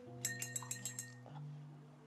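A quick run of about seven light, ringing clinks in the first second, over soft background music with held low notes.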